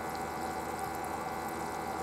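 Steady bubbling and water trickle from the aerator in a live-bait bucket, with a steady hum underneath.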